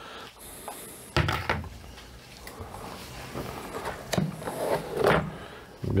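Clear plastic storage tubs being handled and moved about on a counter: a few separate knocks and clunks with rustling between them.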